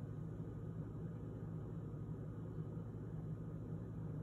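Quiet room tone: a faint, steady low hum with light hiss and no distinct events.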